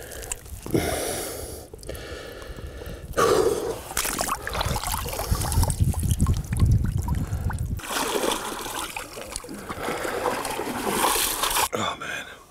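Water splashing and trickling as a common carp is lifted and held in shallow water, with a man's heavy breaths in between.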